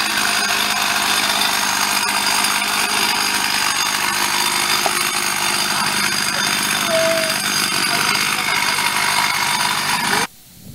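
Chainsaw running steadily at high revs, cutting through a large fallen tree trunk.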